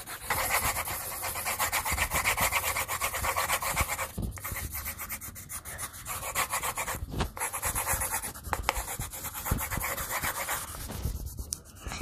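Coloured pencils rubbing on paper clipped to a clipboard, shading in fast back-and-forth strokes, with two short pauses.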